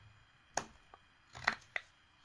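Carving knife making V cuts into a small wooden figure: a few short, sharp slicing strokes, the first about half a second in and a quick pair near the end.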